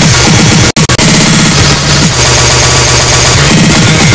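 Loud, dense electronic dance music from a DJ mix, with repeated downward-sliding bass tones. The whole mix cuts out three times in quick succession just under a second in, a stutter, then carries on.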